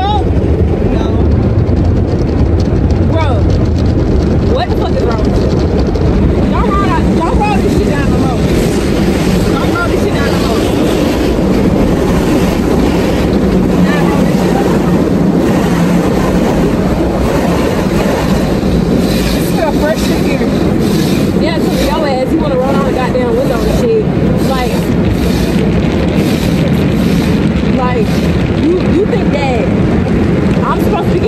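Automatic car wash running over the car, heard from inside the cabin: a loud, steady rush of water spraying against the body and windows.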